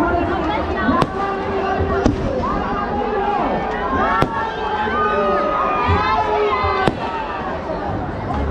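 Fireworks bursting overhead, four sharp bangs spread across a few seconds, over a large crowd shouting and talking.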